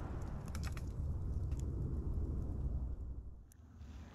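Campfire crackling with sparse sharp pops over a low rumble, fading out about three seconds in.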